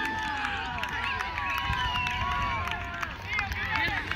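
Voices of players and onlookers calling and shouting across an open soccer field, overlapping and without clear words.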